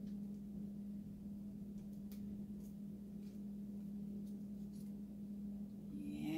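Faint scattered ticks and crinkles of a bare-root young tree and its plastic sleeve being handled, over a steady low hum.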